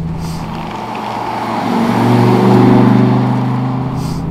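Audi urS4's turbocharged 2.2-litre inline-five (AAN, big GT3071R turbo, 3-inch exhaust) running under throttle. The engine note swells, loudest about two and a half seconds in, then eases off.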